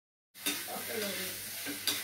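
A steady high-pitched hiss that starts about a third of a second in, with a short click just after it starts and another near the end.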